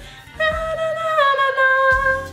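A woman singing one high held note, about a second and a half long, that steps down in pitch partway through. It demonstrates the high vocal harmony she misses in the chorus.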